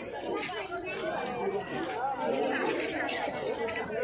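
Chatter of a crowd: many people talking at once, no single voice clear.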